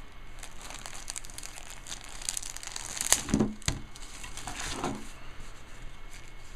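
Clear plastic bag crinkling and crackling in irregular bursts as a card wallet is handled and slid out of it, loudest about halfway through.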